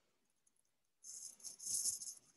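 A second of near silence, then a brief, faint scratchy rustle lasting about a second.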